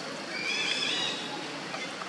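A baby macaque crying: one high, thin call that rises and then holds for under a second, over a steady background hiss.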